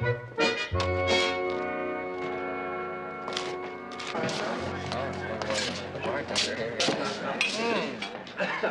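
A short passage of background scene-change music that ends about three seconds in, followed by the chatter of a crowd of many voices at once, with scattered clicks and knocks.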